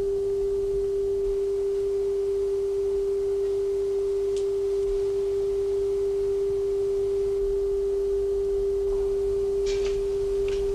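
A steady electronic tone held at one unchanging pitch, from the laboratory's monitoring equipment, with a few faint clicks near the end.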